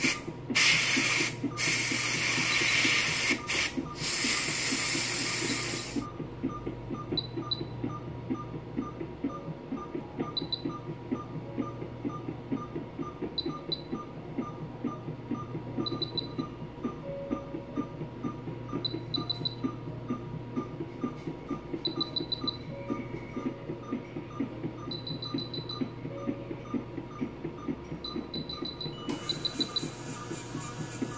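A loud hiss of air from the dental unit at the cat's tooth for about the first six seconds, broken by a few short gaps. After it stops there is a steady low hum with a fast, even low pulsing, and short high electronic beeps in groups of one to three about every three seconds.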